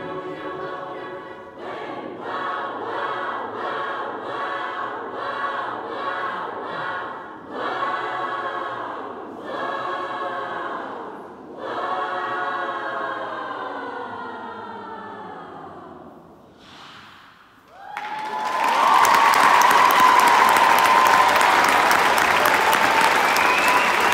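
School choir singing a series of short chorded phrases, then a final held chord that fades away. About 18 seconds in, the audience breaks into loud applause, with a held high tone, like a whistle or cheer, running over it.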